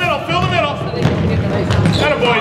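A basketball being dribbled and sneakers running on a hardwood gym floor, heavier in the second half, with spectators' voices shouting over it.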